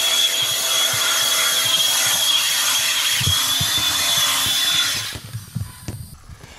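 ARRMA Infraction 6S RC car doing a burnout, its ESC's punch setting turned up: a steady high whine from the brushless motor over the hiss of its tyres spinning on pavement. It cuts off suddenly about five seconds in.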